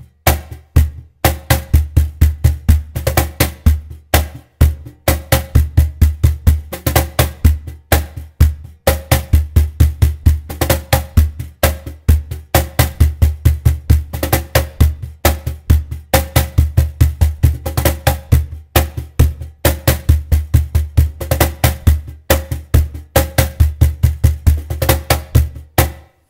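Cajon played by hand in a repeating samba-reggae groove: deep bass strokes alternating with quick high tone notes and louder accented slaps, the pattern cycling without a break. The playing stops just at the end.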